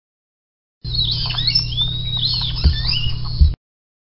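A solenodon's high-pitched squeaks, gliding up and down, over a steady low hum, with two thumps near the end. The recording starts about a second in and cuts off abruptly.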